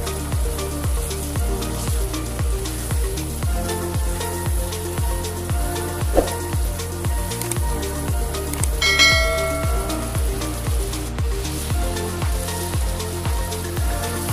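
Prawn and potato curry sizzling and crackling in a frying pan as it is stirred, under background music with a steady beat. A short chime rings about nine seconds in.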